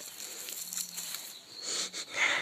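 Lemongrass leaves rustling and scratching as fingers grip and rub along the blades, quiet and dry, a little louder near the end.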